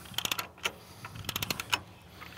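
Lever-operated chain come-along being worked to slacken its chain: two quick runs of ratchet pawl clicks about a second apart, with a single click between them.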